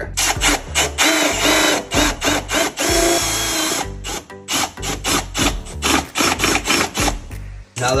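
Cordless drill with a right-angle attachment boring a hole through a wooden board: a steady drilling whir for about the first four seconds, then a series of short bursts as the trigger is pulsed to finish the hole. Background music plays underneath.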